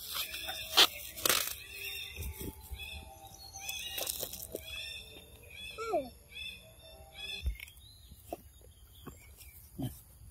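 Outdoor ambience of repeated short, high chirping calls, with a short falling call about six seconds in and a few sharp knocks in the first half.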